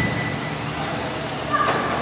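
1/10-scale electric on-road touring cars racing on the track, a steady motor whine with one car's pitch rising as it accelerates about one and a half seconds in.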